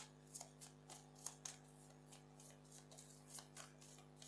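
Deck of tarot cards being shuffled and handled: faint, irregular soft clicks and flicks of card edges, over a steady low hum.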